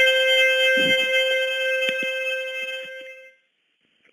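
Playback of a recorded phone message: one steady held note with overtones, like a wind instrument, fading out into silence about three seconds in. A couple of faint clicks sound over it.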